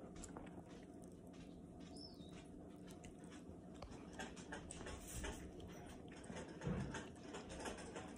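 Chihuahua licking and chewing soft wet food from a hand: faint, irregular wet smacking clicks. There is a single soft low thump about two-thirds of the way through.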